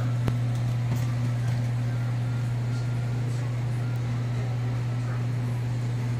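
A steady low hum runs throughout, with a single sharp click about a third of a second in.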